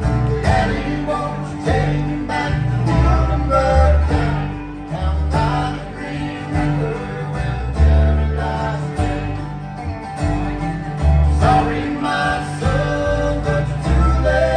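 Live bluegrass band playing an instrumental break: acoustic guitar, mandolin, dobro and upright bass.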